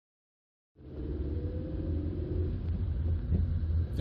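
Silence, then about three quarters of a second in, a steady low rumble inside the cabin of a 2017 Skoda Rapid Spaceback with its 1.2 TSI four-cylinder turbo petrol engine, driving: engine and road noise.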